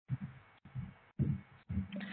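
A pause in speech: a few faint, low, dull thuds over quiet background hiss.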